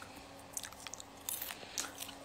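Someone biting and chewing something crunchy close to a phone's microphone: a few short, sharp crunches and clicks about a second apart.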